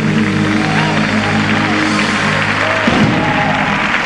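Southern gospel band sustaining a chord at the close of the song, with applause breaking out over it.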